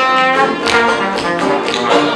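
A small old-time band playing, with clarinet and trombone sounding together over banjos.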